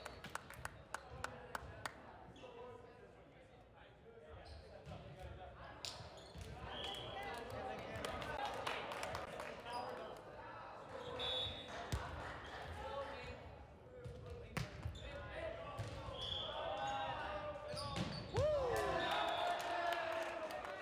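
Volleyball players' voices and calls in a gym, with a few sharp knocks of a ball bounced on the hardwood floor and short high squeaks from sneakers.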